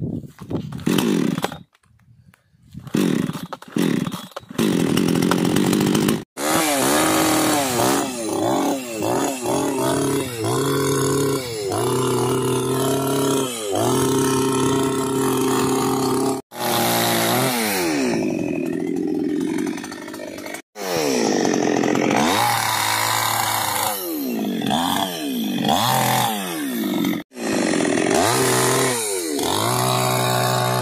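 Two-stroke petrol chainsaw started with a few short bursts, then running loud and revving up and down over and over as it cuts through a thick tree trunk. The sound breaks off abruptly several times.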